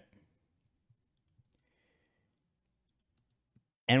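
Near silence: quiet room tone with a few faint, isolated clicks spaced apart.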